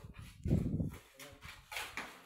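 A long-handled hoe scraping and scooping wet mud on a concrete floor, with a scrape near the end. About half a second in comes a louder, short low-pitched sound.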